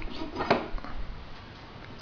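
Faint handling of copper pipe fittings: a few light clicks as a copper reducer with a brass fitting is held on the end of a copper tube, the strongest about half a second in, then quiet room tone.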